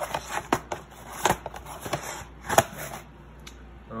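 A cardboard box of fireworks rockets being handled: rustling and scraping with a few sharp taps and knocks, the loudest about two and a half seconds in.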